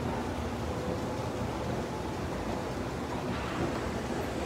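Steady low rumble of a large indoor shopping mall's background noise.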